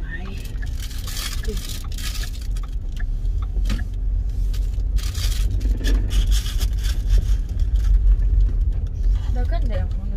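Steady low road rumble inside a moving car's cabin, with a brighter hiss that comes and goes several times over it.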